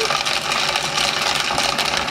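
Vitamix Vita-Prep blender motor running steadily, chopping herbs, pistachios and garlic into a pesto.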